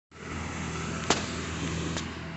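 A motor vehicle engine running steadily, a low hum over a haze of noise, with one sharp click about a second in.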